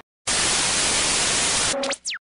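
Television static sound effect: a loud steady hiss of white noise that starts suddenly after a short silence. Near the end it gives way to two quick rising electronic sweeps and a brief tone.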